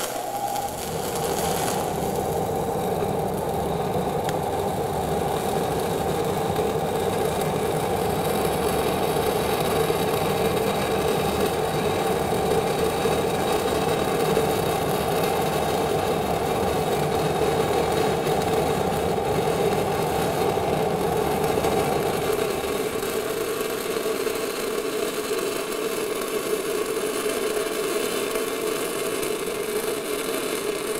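Shielded metal arc (stick) welding with an E6010 electrode, run at about 75 amps on an ESAB Renegade: a continuous crackling arc as the root pass is laid into 4-inch schedule 40 steel pipe. The deeper part of the sound thins about three-quarters of the way through.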